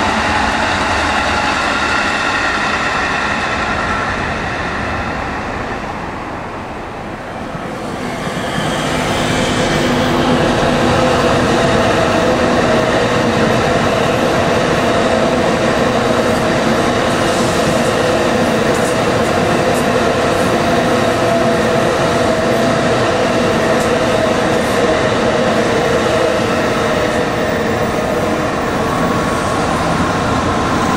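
Electric trains passing. A commuter train runs by with a steady motor whine that fades about seven seconds in. Then a Tokaido Shinkansen train comes past with a steady hum and rolling noise, louder, lasting through the rest.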